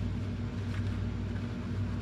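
Steady low background hum, like a fan or motor running, with a few faint ticks.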